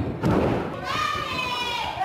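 Wrestling-ring canvas thudding hard twice as a wrestler's body lands after a flip, the second thud about a quarter-second after the first. A long high-pitched shout from the crowd follows, falling in pitch.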